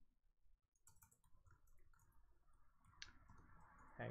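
Near silence with a few faint computer-keyboard keystroke clicks as terminal commands are typed, one sharper click about three seconds in.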